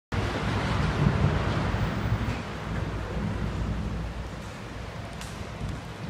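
Building demolition work: a steady low machinery hum under a rough, noisy rumble. Louder for the first two and a half seconds, then easing off.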